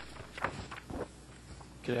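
A few soft footsteps on a hard floor, then a man starts to speak near the end.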